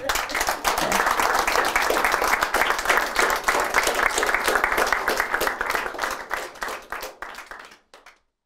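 Small audience applauding, a dense patter of many hands clapping that thins out and dies away near the end.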